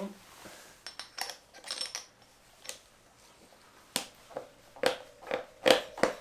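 Metal clicks and knocks of an Eastbound Tyre-Pro bead breaker and tyre lever being fitted onto a motorcycle wheel rim. A string of separate strikes, the loudest few near the end with a short metallic ring.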